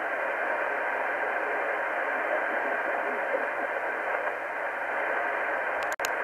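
Steady hiss of band noise from a Kenwood TS-590 transceiver's speaker on 20-metre upper sideband, heard through the radio's narrow voice passband. Two short clicks come just before the end.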